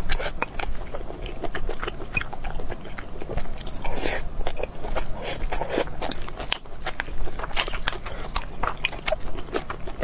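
Close-miked eating sounds: steady chewing with many quick wet mouth clicks and crunches, and a metal spoon scraping a glass bowl.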